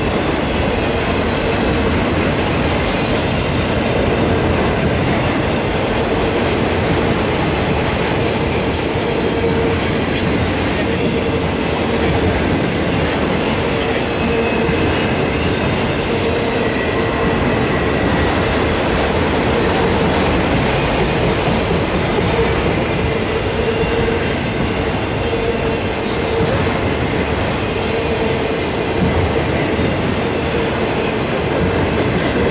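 Enclosed autorack freight cars rolling past on jointed track: a steady, loud noise of steel wheels on rail, with a steady ringing tone running through it and faint higher squeals near the middle.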